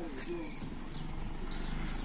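Footsteps on a wet, muddy gravel track, with a faint voice briefly near the start.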